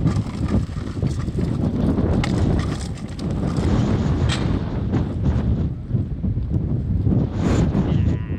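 Heavy wind buffeting the camera microphone with a constant low rumble, broken by a few sharp knocks, the clearest about four seconds in.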